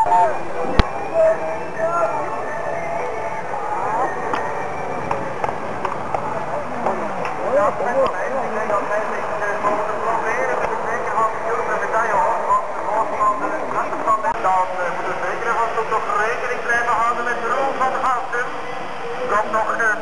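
Many overlapping voices of spectators talking, a steady babble with no single clear speaker. There is a sharp knock about a second in.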